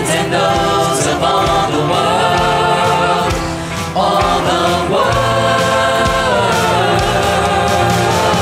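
Choir singing a Christian worship song over a band, on long held notes, with a new chord coming in about four seconds in.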